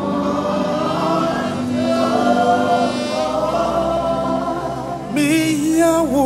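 Gospel vocal group singing a hymn in held, harmonised notes over live band accompaniment. Near the end a louder lead line with vibrato comes in.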